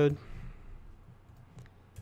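A few faint, sparse clicks from computer keyboard keys as the last letter of a username is typed and the cursor moves on to the password field.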